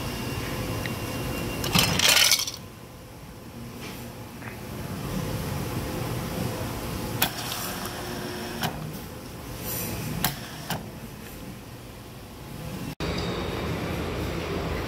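Self-serve beverage dispenser pouring a milky drink into a plastic cup, with a brief loud spray of liquid about two seconds in, then a softer pour and a few light clinks.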